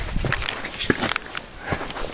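Footsteps on a stony dirt path: a few uneven steps with scattered small clicks of loose stones underfoot.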